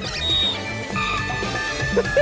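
Background music with held notes, laid over the edited footage.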